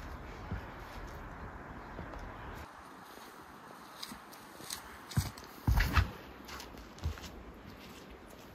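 Footsteps on a disc golf tee pad during a run-up and throw: a few soft steps, then a cluster of heavy thuds just before six seconds in as the thrower plants his feet and releases, and one more step about a second later.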